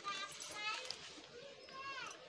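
Faint background voices, with a child's high-pitched voice heard in the first second and again near the end.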